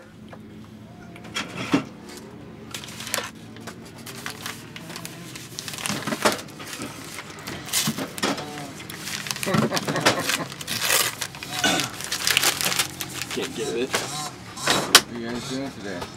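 Kitchen clatter: repeated knocks, clinks and rustles of food containers and wrappers being handled, with low, indistinct voices.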